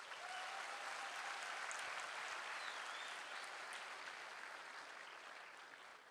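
Audience applauding, a steady patter of clapping that builds in the first second or two and then fades away toward the end.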